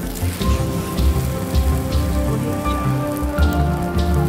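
A chapati sizzling and crackling as it fries in oil on a hot flat griddle, under background music with pulsing bass and held notes.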